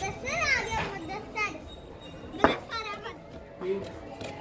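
Children playing and calling out in high, swooping voices, with a single sharp knock about two and a half seconds in.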